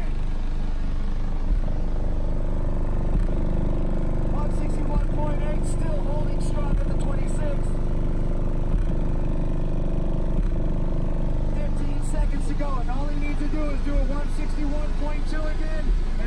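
Competition car audio subwoofers playing bass at full power during a timed decibel hold, heard from outside the sealed truck, with a thump about every two seconds. Crowd voices are mixed in.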